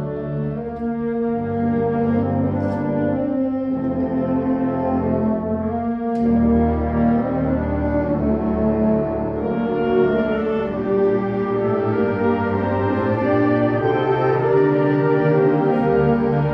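A high school concert band playing slow, sustained chords, with brass such as horns and trombones prominent. The chords change every few seconds with brief breaks between phrases, and the music swells slightly louder after the first few seconds.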